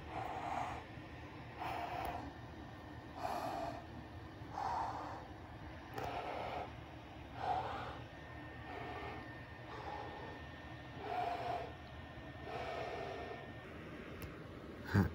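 A person's voice making play creature noises for toy reptiles in a fight: short breathy bursts, about one every second and a half.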